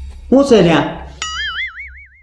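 A short loud exclaimed voice that swoops down in pitch, then a comic 'boing' sound effect: a tone that starts suddenly just over a second in and wobbles up and down about five times a second.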